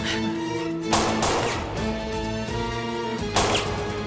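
Dramatic background music of held tones, broken by two loud sharp bangs with a ringing tail, about a second in and again about two and a half seconds later: gunshots echoing in a stone tunnel.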